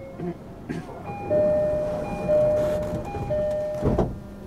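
Door-closing chime of a JR East E233-series train car: three two-note chimes, a high note then a lower one, as the doors close. It ends with a short thump as the doors shut.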